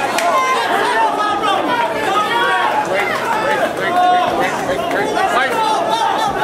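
Fight crowd and cornermen shouting and yelling, many voices overlapping with no single voice standing out.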